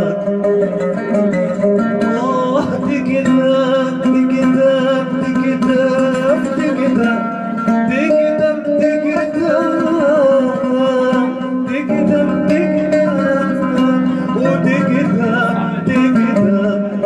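A man singing a Palestinian folk song, accompanied by an oud.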